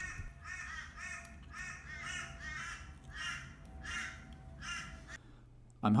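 A crow cawing over and over, about two calls a second, stopping about five seconds in.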